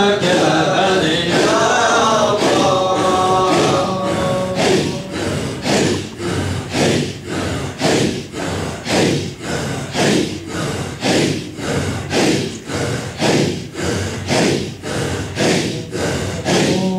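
A group of men chanting together in a Sufi hadra dhikr: a held, sung line for the first few seconds, then rhythmic breathy group chanting in even pulses, about two a second.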